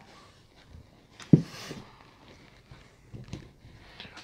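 A single sharp knock of a glass or bottle set down on the table about a second in, with faint handling clicks later.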